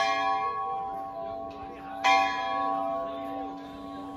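A large bell struck twice, about two seconds apart, each strike ringing on and slowly fading.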